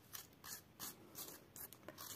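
A metal spoon scraping the soft flesh and fibres from inside a halved pumpkin: faint, repeated scraping strokes, about three a second.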